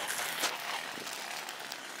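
Steady outdoor background noise with no distinct source, and a faint click a little before the middle.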